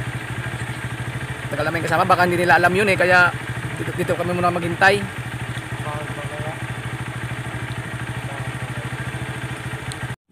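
Motorcycle engine idling steadily, a low even putter.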